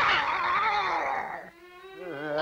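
Cartoon bear roaring, a voiced growl that fades out after about a second and a half. A faint held musical note begins near the end.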